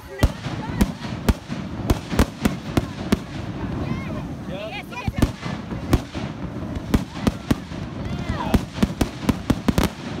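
Aerial fireworks shells bursting in irregular succession, about twenty sharp bangs over a continuous low rumble, coming faster in the last two seconds. Onlookers' voices can be heard faintly between the bangs.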